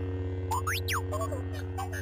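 Intro sound design: a steady low electronic hum in the manner of a lit lightsaber, with held tones over it. About half a second in, a pair of electronic chirps glide down and back up, followed by a few short clicks and blips.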